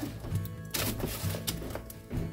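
Background music with a steady low tone, over a few irregular light clicks and scrapes of a utensil stirring food on a sheet pan.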